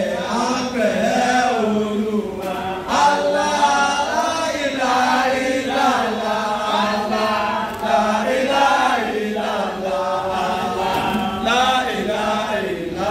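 A man chanting a song into a microphone, his amplified voice running on without a break and rising and falling in pitch.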